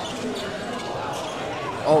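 Basketball being dribbled on a hardwood gym floor, over the steady crowd noise of a large hall.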